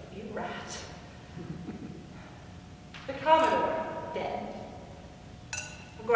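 A woman speaking in a stage monologue, with drawn-out, held vocal sounds and a louder burst of voice about three seconds in.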